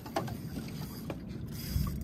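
Steady low rumble of wind and water noise around a small open fishing boat, with a couple of faint clicks, one just after the start and one about a second in.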